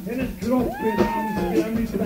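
Comic vocal noises from a band member in a break in the music: short babbling sounds, then one long cat-like meow of about a second that rises and falls in pitch.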